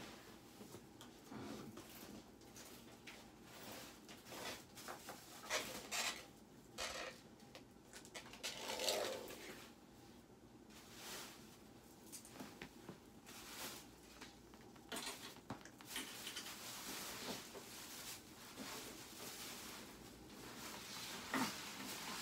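Faint, scattered knocks, clicks and rustles of things being handled and moved, with a longer rustle about nine seconds in.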